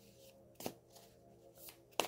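A deck of tarot cards being shuffled by hand, soft quiet strokes of cards sliding and tapping against each other, with one sharper snap about two-thirds of a second in.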